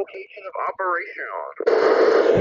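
A distant station's voice coming through a Kenwood TM-V7 FM transceiver's speaker, thin and band-limited. About a second and a half in it gives way abruptly to a loud burst of static hiss, the squelch tail as the other station unkeys.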